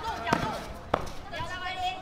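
Two sharp impacts from a karate kumite bout, about half a second apart, over crowd voices, with a long held shout near the end.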